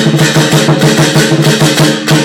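Lion dance percussion: a drum beaten in a fast, steady rhythm with crashing cymbals and a ringing gong, played loud and continuously.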